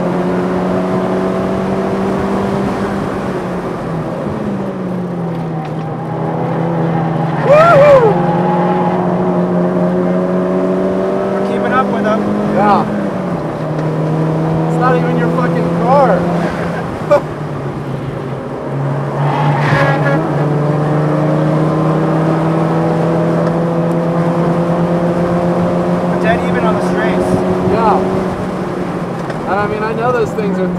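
Turbocharged four-cylinder of a tuned 2007 VW Mk5 GTI heard from inside the cabin at track speed, its note climbing slowly and stepping in pitch several times as the car shifts gears. A few brief sharp sounds cut through, the loudest about eight seconds in.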